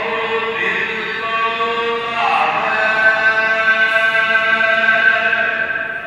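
Gurbani kirtan, Sikh devotional singing, with long held notes that shift pitch about two seconds in, beginning to fade out at the very end.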